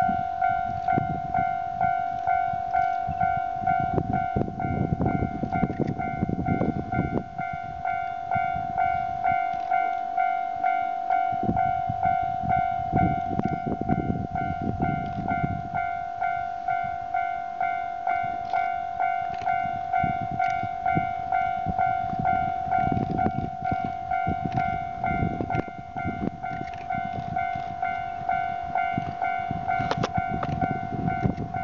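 Railway level-crossing alarm ringing steadily, a single electronic tone pulsing a little over once a second. Underneath, a low rumbling noise swells and fades several times.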